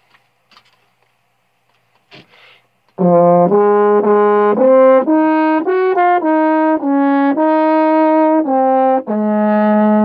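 A solo brass instrument plays a slow melody of held notes, starting about three seconds in after a near-silent pause.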